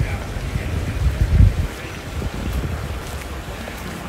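Wind buffeting the microphone: an uneven low rumble that swells briefly about a second in.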